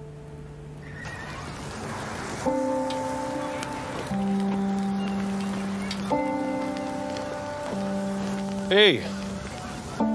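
Film soundtrack music of sustained chords, changing every second or two, over a steady hiss captioned as a barbecue. Near the end a man gives a loud, swooping shout of "Ey!".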